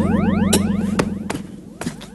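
Electronic magic sound effect for a genie appearing in a puff of smoke: fast, repeated rising sweeps over a low steady hum, broken by a few sharp clicks, fading away about a second and a half in.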